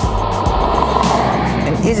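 A car passing, its rushing noise swelling to a peak about a second in and then fading, over background music with a steady low beat.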